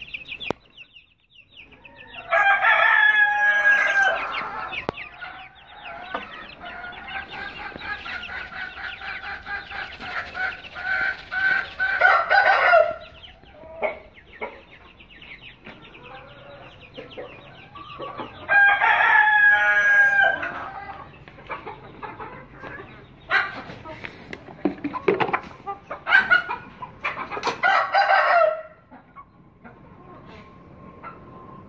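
Chickens in a poultry shed: a rooster crows loudly twice, about two seconds in and again about eighteen seconds in, with young chicks peeping and birds clucking in between.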